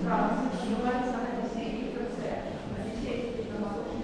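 Indistinct voices talking, with no other sound standing out.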